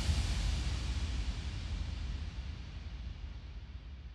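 The decaying tail of the closing hit of an electronic dance track: a low rumble and hiss dying away steadily, with no beat.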